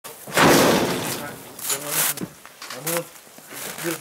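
A loud clatter about half a second in that fades over most of a second, followed by two shorter knocks or scrapes.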